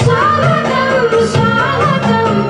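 A South Asian film-style song: a singing voice carrying a gliding melody over a steady drum beat.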